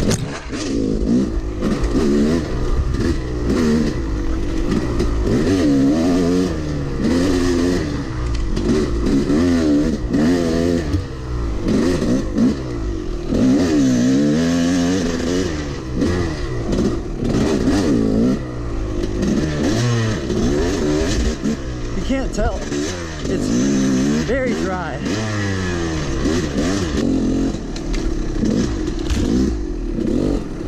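Dirt bike engine heard close up from the bike, revving up and falling back over and over as the throttle is worked and the gears change through tight trail riding, with occasional knocks and clatter from the chassis.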